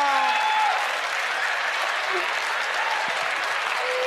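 Studio audience applauding steadily, with a voice trailing off in the first second.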